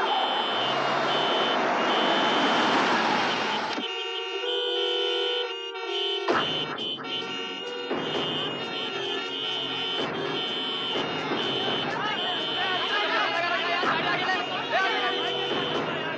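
Jammed city traffic: car and bus horns honking in long held tones over engine and street noise. The street noise drops out for about two seconds partway through, leaving only the horn tones, and shouting voices join in the second half.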